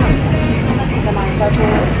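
Restaurant background: a loud, steady low rumble with other diners' voices and background music over it.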